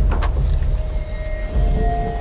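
Low, steady rumble of a motor boat's engine under dramatic background music with long held notes, with a sharp click about a quarter second in.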